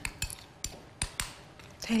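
Small metal spoon stirring a thick tahini paste in a ceramic bowl, clinking against the bowl in a string of irregular taps.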